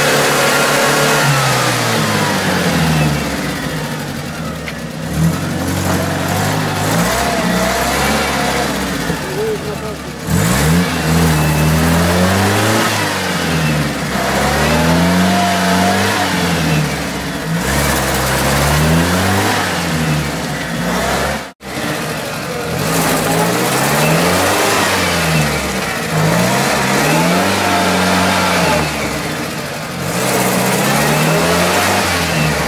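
UAZ-469 engine revved hard and let off again and again, rising and falling about every two seconds, as the 4x4 churns in deep swamp mud trying to get unstuck. The sound cuts out briefly about two-thirds of the way through.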